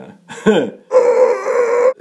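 A man's short laugh, then a loud vocal sound held at one steady pitch for about a second, cut off suddenly.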